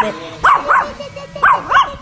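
A shepherd-type dog giving four short yipping barks, in two quick pairs.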